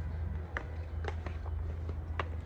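Footsteps of people walking in slippers on a sandy rock path: a few light slaps, roughly two a second, over a steady low rumble.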